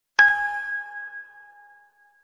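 A single bell-like chime struck once, with two clear pitches, ringing on and fading away over nearly two seconds.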